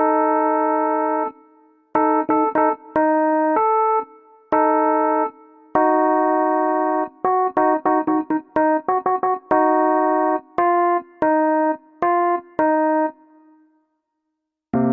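Electronic keyboard played with the right hand only: a cumbia melody of held chords and short phrases, with a run of quick short notes in the middle and no bass part.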